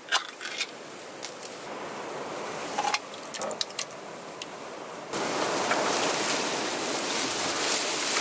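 A metal soup can being opened by hand: scattered small clicks and metallic snaps. About five seconds in, a steady rushing noise comes in and stays.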